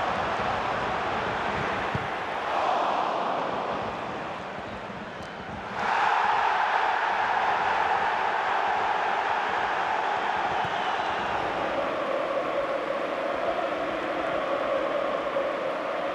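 Football stadium crowd noise from a packed home crowd, swelling briefly about two and a half seconds in, then rising suddenly about six seconds in and staying loud.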